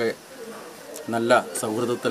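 A man speaking Malayalam in a news interview, with a pause of about a second near the start before he carries on.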